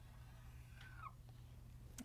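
Faint dry-erase marker stroking across a whiteboard while a curved line is drawn, with one brief falling squeak from the marker tip about a second in; otherwise near silence.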